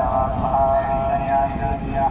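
Hitachi ALCO HBU-20 diesel-electric locomotive running with a steady, pitched engine note over a low rumble.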